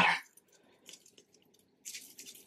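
Topping being poured onto a bowl of popped popcorn: a few faint, soft patters, then a brief, slightly louder crackle of the popcorn near the end.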